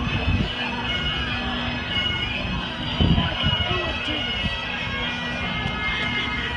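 Bagpipes playing: a steady drone held under the pipe tune throughout, with a few voices speaking briefly about three seconds in.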